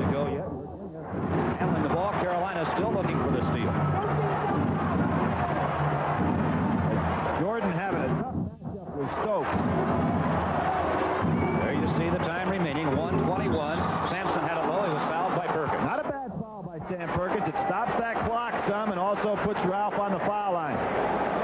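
Packed basketball-arena crowd cheering and yelling: a dense, steady wall of many overlapping voices, heard through an old TV broadcast, with three brief lulls.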